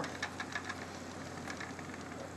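Treadle spinning wheel running steadily as yarn is spun: a faint whir with light, quick ticking from the turning wheel and flyer.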